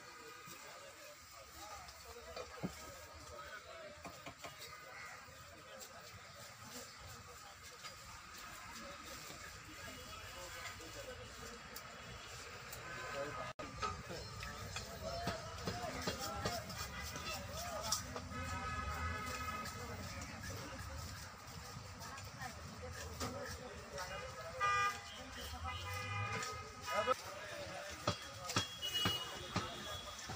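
Background voices talking, with vehicle horns honking several times, in longer blasts in the second half.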